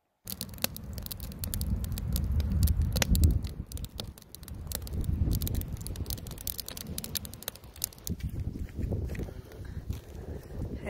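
Wood campfire crackling in a metal fire ring: many sharp pops and snaps over a steady low rumble, most frequent in the first few seconds.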